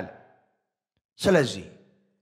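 A man's voice on a close headset microphone: the end of a phrase fades out, and after a short pause comes one brief breathy utterance that falls in pitch.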